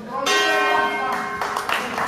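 Boxing ring bell struck once, ringing with a bright metallic tone for about a second and a half before dying away, marking the end of a round.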